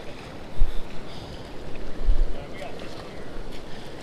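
Flowing river water around wading legs, a steady rushing noise, with wind buffeting the microphone in low rumbling bumps about half a second and two seconds in.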